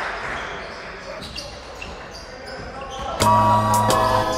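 Live basketball game sound: a ball bouncing on the court and players' voices, fading over the first three seconds. About three seconds in, background music with a steady bass line starts suddenly and loudly.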